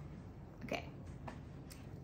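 Quiet room tone with a woman's short, soft "okay" a little under a second in, and a faint brief click near the end.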